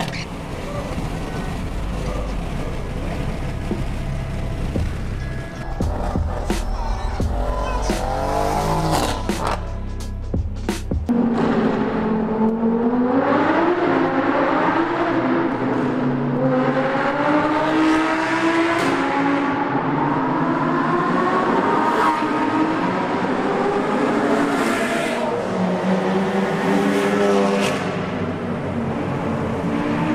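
Low road and engine rumble from inside a moving car. About eleven seconds in it gives way to car engines revving in a road tunnel, their pitch climbing and dropping again and again.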